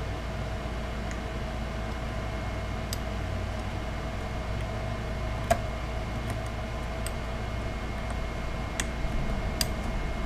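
Faint ticks and clicks of a hobby knife blade trimming excess at a guitar headstock's glued truss rod opening, with one sharper click about halfway through, over a steady background hum.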